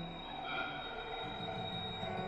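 Quiet contemporary chamber music for tenor saxophone, electric guitar, cello and electronics: held, ringing tones over a steady high tone, with a low note dropping out just after the start and higher notes entering about half a second in.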